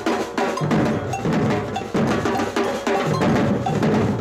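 A drum ensemble playing a steady, driving rhythm together, sticks striking shoulder-slung drums and a stand-mounted drum set, with heavy low accents recurring every half-second or so.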